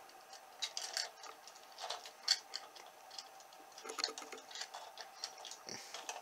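Small plastic LEGO pieces clicking and tapping as the roof hatch of a LEGO camper van is handled and lifted: light, irregular clicks, the loudest about two seconds in.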